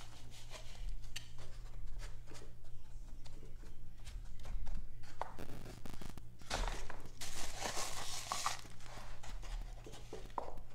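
Homemade potting soil being scooped with a cup and poured into seed-starting cells: light scraping and rustling with small clicks, loudest in a stretch of rustling from about six and a half to eight and a half seconds in.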